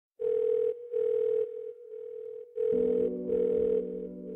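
Telephone ringing tone heard down the line, a steady single pitch in two double-rings of short pulses, the call not yet answered. A low steady drone comes in under it about two and a half seconds in.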